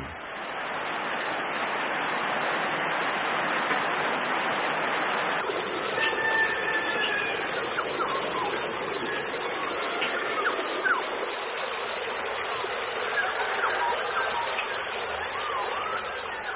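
Small jungle waterfall rushing steadily, with short whistled bird calls scattered over it from about six seconds in.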